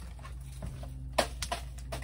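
Frozen packages being handled and shifted in a chest freezer: one sharp knock about a second in, then a couple of lighter clicks, over a steady low hum.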